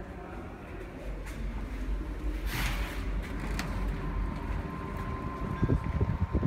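Steady low rumble of a GO Transit bilevel train standing at the platform. A short hiss comes about two and a half seconds in, and a thin steady high tone starts partway through. Wind buffets the microphone near the end.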